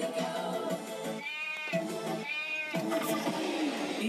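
Pop song clip playing from a radio, with two short high vocal notes about a second apart.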